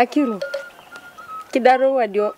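A woman's voice in short utterances: one falls in pitch at the start, and one is held on a steady pitch near the end. Between them come short whistled tones, repeating several times.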